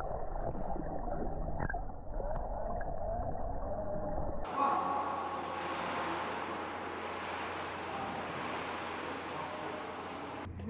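Pool water heard underwater: muffled bubbling and gurgling with wavering tones. About four and a half seconds in it cuts to a steady wash of splashing water at the surface of an indoor pool.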